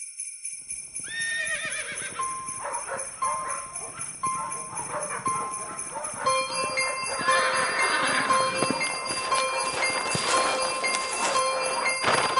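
Sleigh bells jingling over a horse's hooves clip-clopping at an even pace, with a horse whinnying about a second in. A sharp crack sounds near the end.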